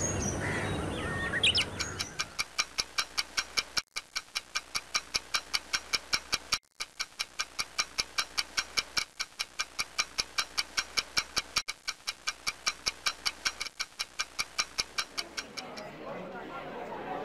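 Fast, even ticking like a clock, several ticks a second, which starts about a second and a half in after a short swell of noise and keeps going with a few brief drop-outs.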